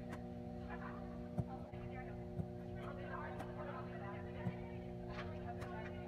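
Faint background voices over a steady hum, with a few sharp knocks, the loudest about a second and a half in.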